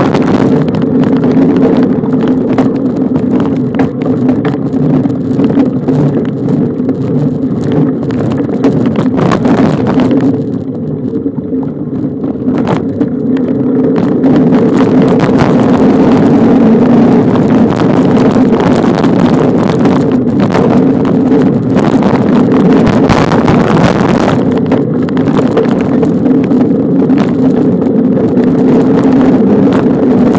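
Steady rumble and rattle of a bicycle ridden fast along a bumpy dirt trail, heard from a camera on the moving bike, with wind buffeting the microphone and frequent knocks from bumps. It eases for a few seconds about a third of the way in, then picks up again.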